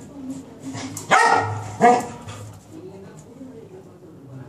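A beagle and a cocker spaniel play fighting: two loud, sharp barks about a second in, under a second apart, over continuous low growling.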